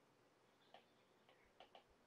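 Near silence with a few faint, irregular ticks of a stylus tapping and writing on a tablet screen.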